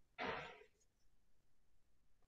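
A short, soft breath out from a woman close to the microphone about a quarter second in, then near silence.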